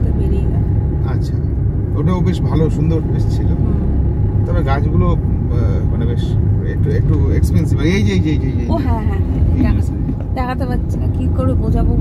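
Steady low rumble of a moving car heard from inside its cabin: engine and road noise while driving, with people talking over it.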